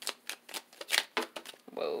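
A tarot deck being shuffled by hand: a quick, irregular run of short card clicks and snaps.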